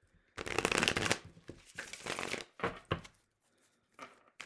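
A Morgan-Greer tarot deck being shuffled by hand: about two seconds of steady shuffling, then a few short bursts as the cards are settled.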